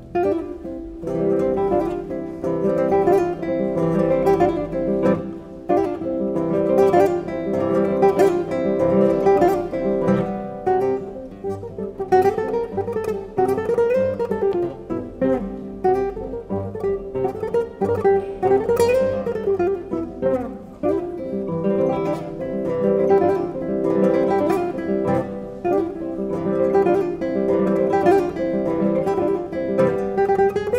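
Nylon-string classical guitars playing together in a busy plucked ensemble piece, with melodic runs rising and falling over steady accompaniment. The playing comes in suddenly and loudly right at the start.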